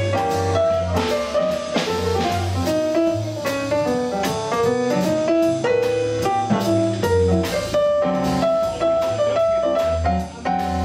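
Live jazz combo playing an instrumental passage: a digital stage piano solos in quick runs of short notes over double bass and drum kit, with no vocal.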